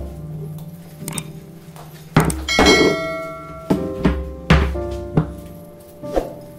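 Background music with held notes, punctuated by several heavy low thuds.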